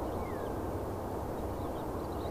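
Steady, low, distant rumble of an Airbus A320's jet engines as the airliner flares for landing.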